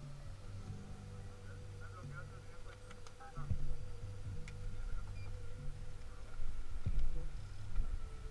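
Muffled, indistinct voices with a few sharp knocks and clicks.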